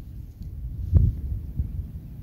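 Low, uneven rumble of wind and handling on a phone's microphone while the person filming walks outdoors, with one dull thump about a second in.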